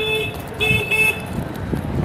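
A vehicle's electronic horn beeping in short pulses, three quick beeps in the first second, over low street traffic noise.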